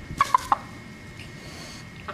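Rooster giving three quick, short clucks in a row.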